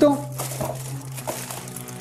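Clear plastic bag crinkling in quick small crackles as hands pull it off a boxed camera, over a steady low hum.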